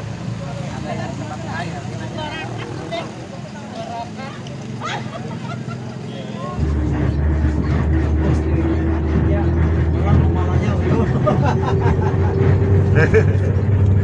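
Chatter of a group of people over a steady engine hum. About halfway through it cuts to the louder, steady rumble of a vehicle on the move, heard from inside the cabin, with voices over it.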